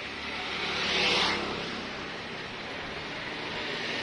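A road vehicle passing by: a swell of tyre and engine noise that rises to a peak about a second in, then fades back into steady street background.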